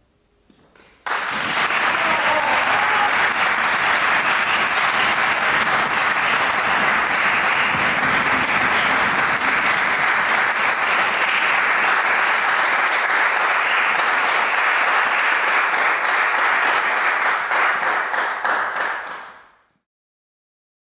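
Audience applauding, starting suddenly about a second in after a moment of near silence, holding steady, and fading out near the end.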